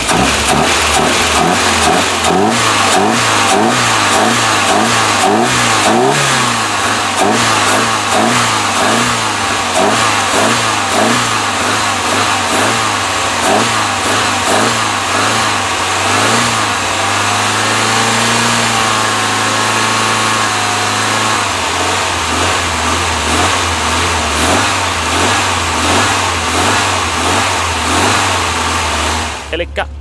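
Long-parked Mercedes-Benz petrol engine being started in freezing cold on petrol poured straight into the intake, because it had spark but was not getting fuel. It runs unevenly for the first several seconds, then settles into a steady run, is revved up and back down about midway, and keeps running steadily.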